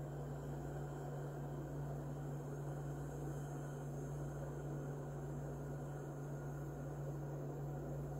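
Steady low hum with a faint even hiss, unchanging throughout: room tone.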